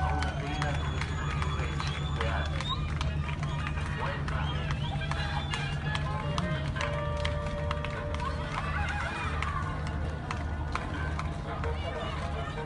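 Steady low hum of a ship's or boat's engine running in a harbour, with voices, calls and scattered knocks over it.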